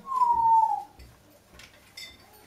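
Congo African grey parrot giving one loud whistle, a single clear note that slides slightly downward and lasts under a second, followed by a few faint clinks from its hanging toy.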